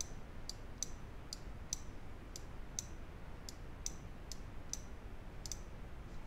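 Computer mouse clicking about twice a second, a dozen or so sharp clicks as points of a mask outline are placed one after another.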